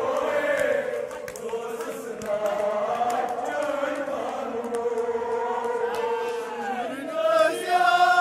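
A crowd of men chanting a noha, a Shia mourning lament, together in a slow sliding melody, with sharp slaps scattered through it from chest-beating (matam). It grows louder near the end.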